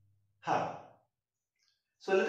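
A man's single short breath or sigh into a headset microphone, about half a second in, fading quickly; then quiet.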